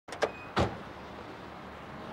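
Car door being opened: two quick latch clicks, then a loud clunk about half a second in as it swings open, over steady street traffic noise.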